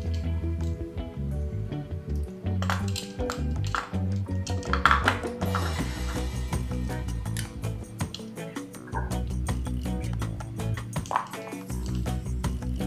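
Background music with a steady bass line and a regular beat.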